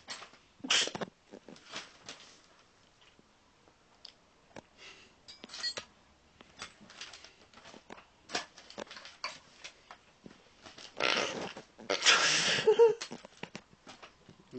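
Scattered small clicks and knocks of hands and a tool working the adjustment screws on a guitar during a set-up, with a louder rustling noise near the end.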